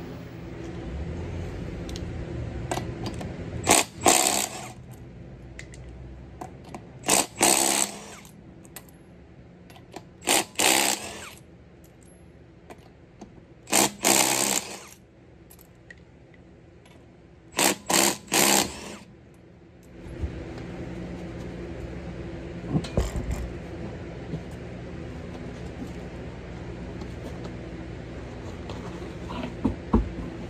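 Cordless impact wrench hammering in five short bursts a few seconds apart, spinning the lug nuts off a front wheel.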